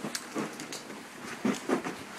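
Scattered soft knocks and rustling from a handheld camera being carried by someone walking, a few near the start and a small cluster about three-quarters of the way through.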